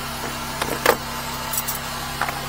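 A few sharp clicks, the loudest just under a second in, as the latches of a plastic case of sewer-jetter nozzles are snapped open. They sound over the steady hum of an idling engine.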